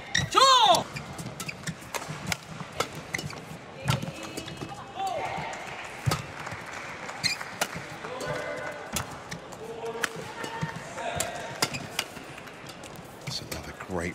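Badminton rally in an arena: rackets striking the shuttlecock with sharp pops at irregular intervals, shoes squeaking on the court, and crowd voices and shouts throughout.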